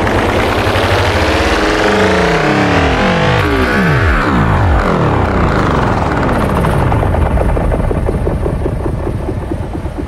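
Techno music from a DJ mix with a synth sweep effect: a cluster of tones glides steadily down in pitch over several seconds while higher tones rise. The sweep thins out and the level drops slightly near the end.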